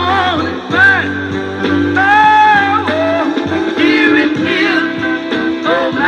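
A 1965 soul 45 playing on a vintage Teppaz portable record player: a male singer's long, wavering notes over guitar and band.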